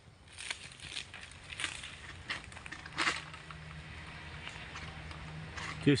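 Irregular sharp cracks and rustling from a long-pole harvesting sickle cutting at the crown of a tall oil palm, the fibrous frond and bunch stalks snapping as the blade is pulled. A faint steady low hum sits underneath in the second half.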